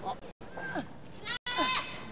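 Short, high-pitched shouts from a human voice in a wrestling arena: a brief cry about a third of the way in and a longer, wavering one near the end, over faint hall background.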